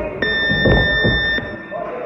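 Boxing gym round-timer buzzer sounding one steady electronic tone for over a second, then cutting off suddenly, with low thuds underneath.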